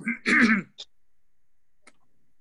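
A person clearing their throat once, briefly, at the start, then a low quiet background with a single faint click near the end.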